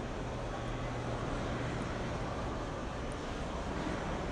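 Steady, noisy room tone of a large indoor exhibit hall, with a low hum that comes in about half a second in and fades about two and a half seconds in.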